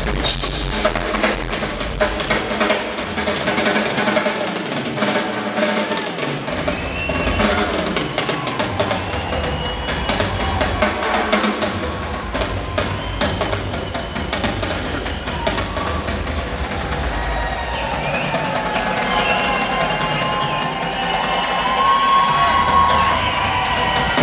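Solo rock drum kit played live: fast kick drum and snare with cymbal crashes and rolls, in a continuous dense stream of strikes.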